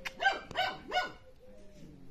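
A young puppy gives three short, high-pitched barks in quick succession within the first second.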